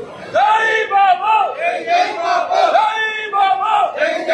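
A crowd of men loudly shouting political slogans, in short, arching shouted calls one after another.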